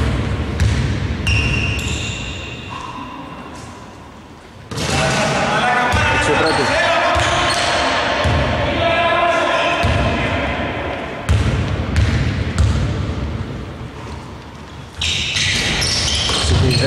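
Basketball bouncing on an indoor court floor in a steady rhythm, the thuds echoing in a large hall, with players' voices on the court.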